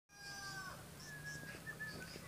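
Birds calling outdoors: a few short high chirps and several held whistled notes, one of them dropping in pitch about half a second in.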